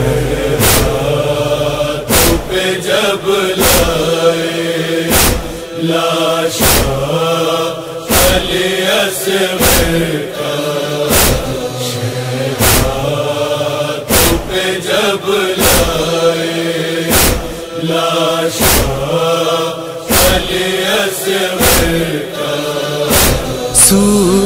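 Male chorus chanting in long, drawn-out tones over a regular thumping beat, with a strong thump about every second and a half and lighter ones between, as the wordless interlude of a noha.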